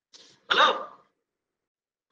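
A person clearing their throat: a brief faint rasp, then a louder one about half a second in.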